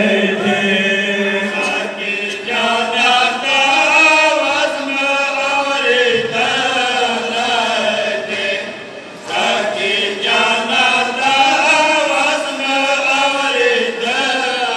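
Men chanting a Pashto noha, a mourning lament, in unison through a microphone and PA, with a short break just before nine seconds in.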